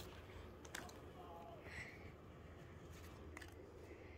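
Near silence: room tone with a few faint ticks and a brief faint voice a little over a second in.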